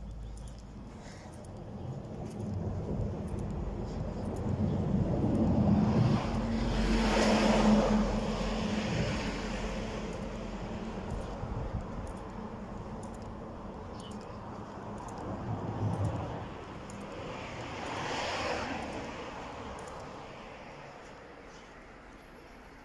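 A car passes along the street, its engine and tyre noise swelling to a peak about seven seconds in and then fading away. A second, quieter vehicle passes later on.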